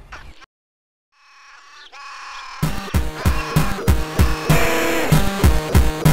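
A short dead silence, then music swells in and breaks into a full-band track with a steady, fast drum beat about two and a half seconds in.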